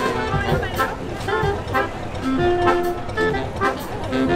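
Small brass band playing live, the trombone among the horns, in short separate notes, with voices talking over the music.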